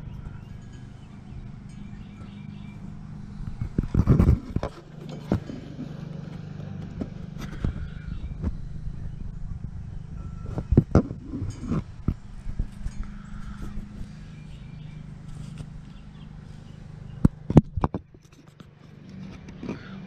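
A steady low hum with scattered knocks and clicks, typical of a handheld camera being moved in and out of a wooden model ship's hull frames. There is a loud cluster of knocks about four seconds in and two sharp ones near the end.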